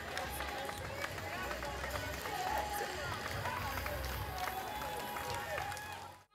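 Outdoor crowd ambience at a street race: scattered voices and chatter from spectators and participants over a steady low rumble.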